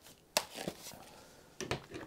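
A Lenovo IdeaPad 330 laptop being flipped over and set down on a desk: its plastic case knocks once sharply about a third of a second in, then a softer knock follows, with a few light taps and clicks of handling near the end.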